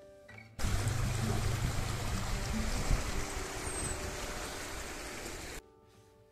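Riverside outdoor ambience: a steady rushing noise with a strong low rumble cuts in abruptly about half a second in and cuts off abruptly just before the end. A brief high chirp sounds in the middle.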